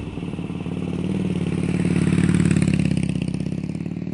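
Harley-Davidson V-twin motorcycle engine running with an even pulsing beat, growing louder toward the middle and easing off near the end.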